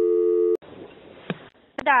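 Telephone line signal tone, a steady low hum of two close notes, cutting off about half a second in, then faint line hiss and a click as a dropped call reconnects.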